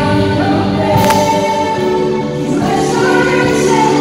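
Live Christian worship band: male and female voices singing together over the band, with a sharp hit about a second in.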